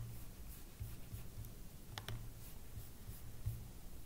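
A single computer mouse click about halfway through, over a faint low room hum with a few soft low thumps.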